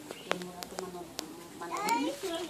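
A cat meowing: one call rising in pitch near the end, with a few sharp clicks before it.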